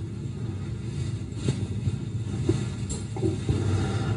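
Low, steady rumble with a few faint clicks: the background noise of a muffled, heavily filtered recording.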